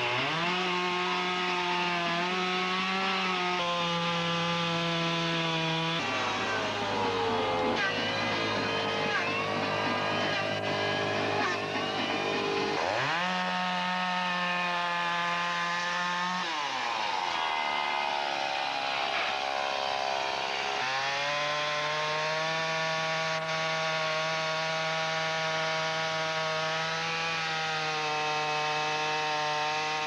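Two-stroke chainsaw running at high revs while cutting into a log. Its pitch sags and wavers twice for several seconds as it works under load, then rises and holds steady again.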